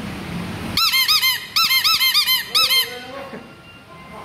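Hand-squeezed rubber bulb horn (clown-style honker) on a scooter handlebar, honked in quick bursts: about ten short honks in three groups, each one rising and falling in pitch.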